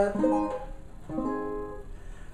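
Custom OME tenor banjo with a 12-inch head: two chords strummed about a second apart, each left to ring and fade.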